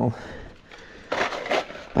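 Brief handling noise: a short rustle or scrape a little past a second in, with a weaker one just after.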